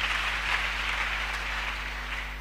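Congregation applauding, an even patter that eases off near the end, over a steady low mains hum from the sound system.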